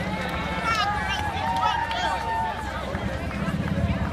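Footsteps of a large crowd of race entrants on asphalt, a dense steady patter, under indistinct chatter and drawn-out calls from many voices.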